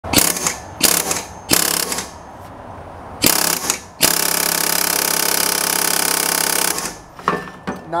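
Pneumatic air hammer driving a shock-driver socket adapter against a stuck oxygen sensor in a catalytic converter pipe: four short bursts, then one continuous run of nearly three seconds starting about four seconds in. The sensor does not come loose easily.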